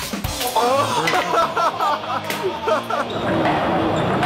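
A group of people laughing loudly over background music; the laughter dies away near the end.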